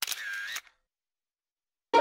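Camera shutter sound effect, one snap lasting about half a second at the very start.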